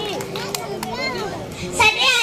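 Speech only: children's voices chattering, then a girl's voice through a microphone comes in louder near the end as she resumes a speech in Urdu.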